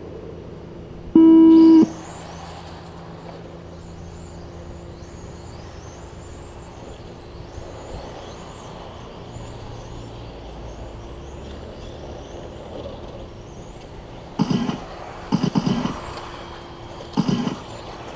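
An electronic race-start tone sounds once for about half a second. The cars of a 1/10-scale electric RC touring car race then set off, their motors making a high whine that rises again and again as they accelerate. A few short, louder bursts come near the end.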